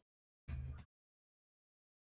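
A man's brief low throat-clearing grunt, once, about half a second in; otherwise silence.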